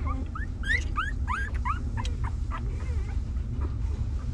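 Newborn puppy whimpering: a quick run of short, high, rising squeaks that thins out after the first couple of seconds.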